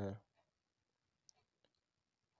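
Near silence with a few faint, short clicks of a pen writing a word on notebook paper.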